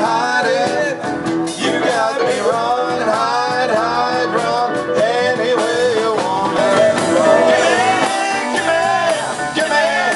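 Live blues band playing: a male lead vocal over electric guitars and keyboard.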